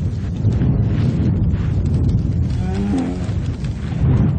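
A bear growling in a low, steady rumble, with a bellowing call about three seconds in.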